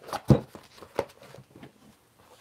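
Hard plastic Milwaukee Packout toolbox being opened and handled: about three sharp plastic clacks in the first second as the latches and lid go, then softer rummaging of tools inside.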